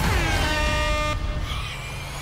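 Air horn blast: one steady note about a second long that cuts off suddenly, over background music.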